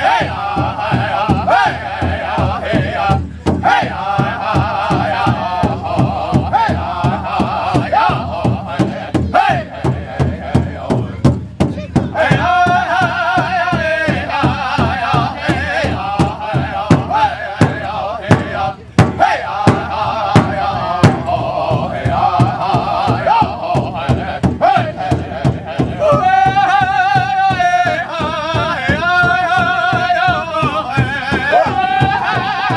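Powwow drum group performing a warm-up song: several men singing high-pitched in unison over a steady, even beat struck together on one big drum.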